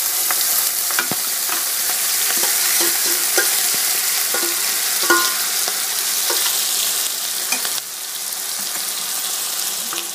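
Marinated mutton in oil sizzling loudly in a hot steel pot, with scattered small clinks and scrapes from a spoon stirring it. The sizzle eases a little near eight seconds.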